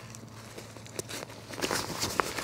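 Backpack fabric rustling and crinkling as the pack's top closure is handled and pulled open, with a single light click about a second in and the rustling growing louder near the end.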